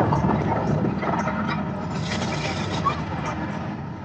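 Gas flame jets on an artificial volcano firing over a low rumble, with a louder rushing burst about two seconds in.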